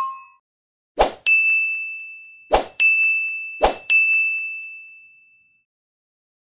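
Chime sound effects of an animated subscribe-and-bell graphic: a bell ding fading out, then three short hits, each followed by a bright ringing ding. The last ding rings out for about a second and a half.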